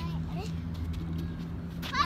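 A child's high-pitched voice: a short squeal just after the start, then a loud cry near the end, over a steady low hum.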